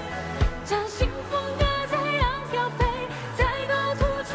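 A woman singing a Mandarin pop song live into a handheld microphone, her voice held in long notes with vibrato, over a backing band with bass and a steady kick drum about every 0.6 seconds.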